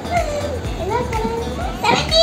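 A young girl's voice over background music with a steady beat.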